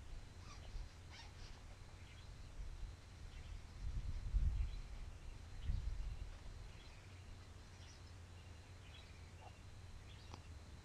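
Scattered faint bird chirps over a low background rumble that swells twice, about four and six seconds in.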